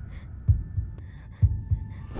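Heartbeat sound effect: low double thumps, lub-dub, about once a second, over a faint hum.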